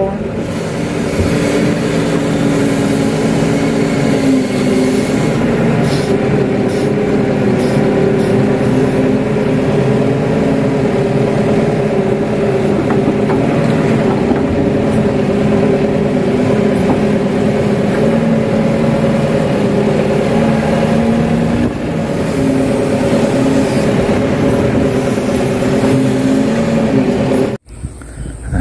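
Kato HD512 excavator's diesel engine and hydraulics running steadily under load while digging, heard from inside the operator's cab, with small rises and falls in pitch. The sound breaks off abruptly near the end.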